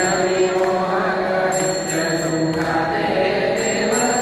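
Devotional mantra chanting, held in long, steady sung tones. A faint high ringing comes and goes about every two seconds.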